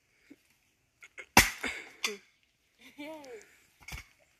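An axe strikes wood hard about a second and a half in, then a lighter blow follows half a second later. A short vocal sound near the end rises and then falls in pitch.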